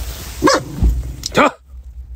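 A dog barking a few short times, the last bark the loudest, about a second and a half in.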